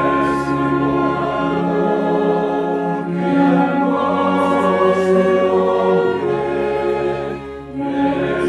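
Mixed choir of men and women singing a Korean hymn with piano accompaniment, in long held phrases, with a brief breath between phrases near the end.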